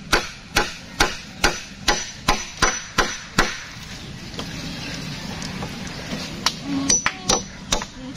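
Claw hammer driving nails into a wooden beam: steady blows, about two to three a second, for the first three seconds. After a pause of about three seconds while a new nail is set, the blows resume near the end.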